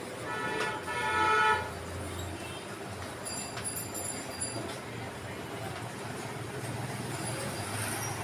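A vehicle horn sounds once from the street for just over a second near the start, over a steady low hum of traffic.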